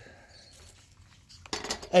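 Mostly quiet, with a few faint metal clinks of hand tools being handled on a workbench; a man's voice starts again near the end.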